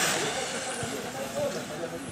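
1:10 electric touring car with a brushless motor (Sakura Zero S, Leopard 8.5T 4450kv) passing close and pulling away. The hiss of its tyres and drivetrain fades over the first second.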